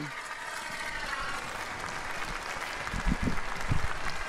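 Audience in a large hall applauding steadily.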